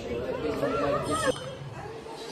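Visitors talking nearby, an indistinct conversation that is loudest for about the first second and then drops back to softer background voices.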